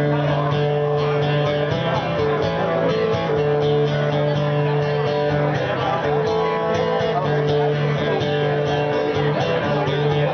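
Acoustic guitar playing an instrumental piece: quick picked notes over held, ringing bass notes, at a steady, even level.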